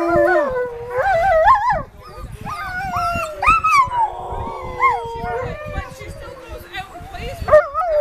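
Alaskan Malamutes howling together, the dogs' 'singing': several overlapping, wavering howls that rise and fall in pitch.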